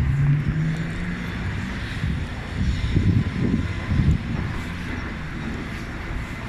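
Low rumble of traffic on a city street, with a steady engine hum in the first two seconds, and uneven low buffeting on the phone microphone.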